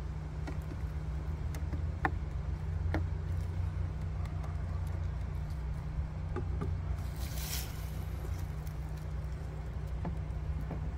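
Light clicks and knocks of plastic hive frames and a hive tool being handled in an open beehive, over a steady low hum. A brief scraping rustle comes about seven seconds in.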